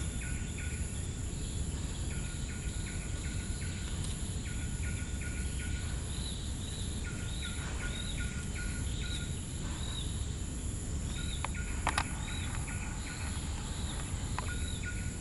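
Outdoor ambience: a steady low rumble under runs of short, evenly repeated chirps from wildlife, about four a second, with higher arched notes among them. A sharp click sounds near the end.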